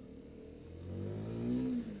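CFMoto 300SS's single-cylinder engine revving up under throttle as the motorcycle pulls away. It is faint at first, rises in pitch for about a second, then drops away near the end. The bike is otherwise stock, with a flashed ECU.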